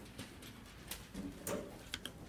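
Faint classroom noise: a few scattered light knocks and clicks of students putting things away in their desks, the sharpest near the middle and again near the end.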